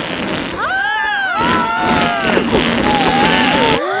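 Cartoon sound effect of a big balloon deflating as its knot is untied: a loud, continuous rush of escaping air that cuts off suddenly near the end.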